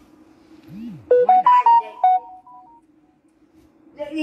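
Mobile phone ringtone playing a short melody of quick beeping notes at stepped pitches, starting about a second in and lasting about a second and a half.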